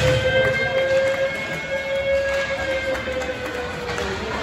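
Arena horn sounding one long blast, its pitch rising slightly and then sagging.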